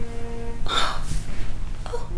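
A short, sharp breath about two-thirds of a second in, over background music with long held notes.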